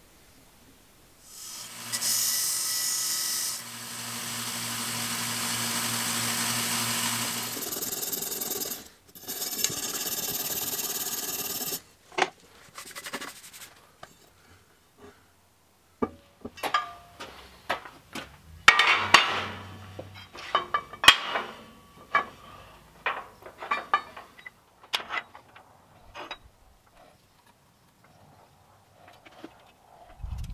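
An electric power tool runs twice on aluminum square tubing, first for about six seconds and then for about three, stopping abruptly. After it, a long string of light knocks and clinks as the aluminum tube pieces are handled and set down.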